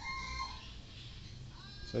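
A faint bird call in the background, thin high tones heard in the first half second and again near the end, over low room noise.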